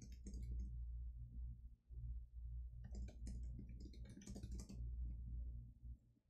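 Computer keyboard typing: quick runs of key clicks just after the start and again from about three to five seconds in, over a low steady hum.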